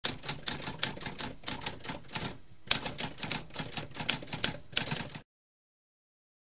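Typewriter typing: a quick run of keystrokes, a short pause about two and a half seconds in, then more keystrokes that stop about five seconds in.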